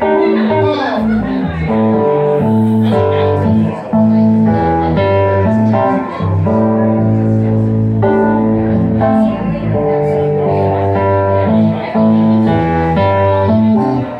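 Live band playing without vocals: held keyboard chords that change every second or two, with electric guitar and drums.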